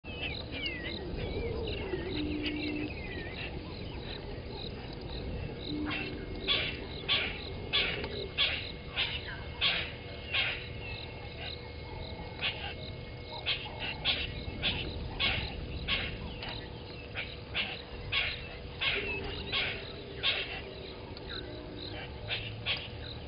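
Birds calling in the bush: a twittering song at the start, then a sharp, short call repeated nearly twice a second from about six seconds in.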